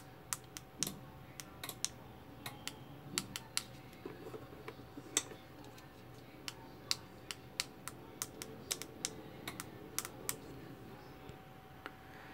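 Buttons on a flip-key car alarm remote being pressed over and over, giving short, sharp, irregular clicks with a little handling rattle. The remote is not working its lock and unlock commands because of a bad contact from cracked solder joints on its circuit board.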